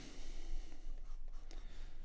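Water-soluble graphite pencil scratching across paper in quick, irregular hatching strokes.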